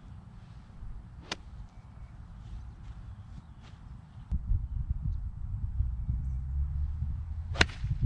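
Ping Eye2 six iron striking a golf ball on a full swing: one sharp crack near the end, with a fainter click about a second in. A low rumble of wind on the microphone builds from about halfway.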